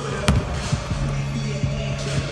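A basketball bouncing on a hardwood gym floor, a few sharp thuds with the clearest just after the start, over steady background music.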